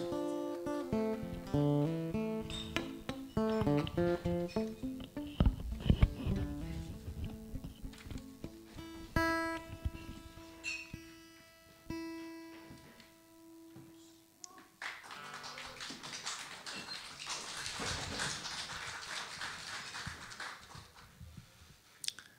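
Guitar picking a slow melody of single notes, then a few long held notes that die away about fifteen seconds in. A soft, steady rushing noise without any pitch follows for the last few seconds.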